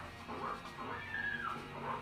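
Pigs squealing in a documentary's farm footage, a few rising-and-falling cries, the longest about a second in, over low background music, heard through laptop speakers.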